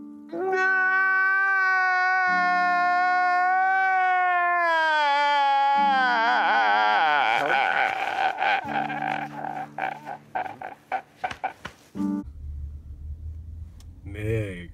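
A man's drawn-out crying wail, one long held note that then wavers and breaks into choppy sobs, over background music.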